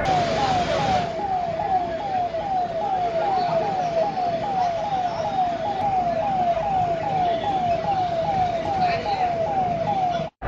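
An emergency vehicle's siren sounding a rapid, repeating falling sweep, about three sweeps a second, over street noise.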